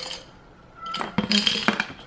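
Small metal trinkets and jewelry clinking and rattling against the inside of a glass jar as a hand rummages in it and tips it, a quick run of clinks starting about a second in.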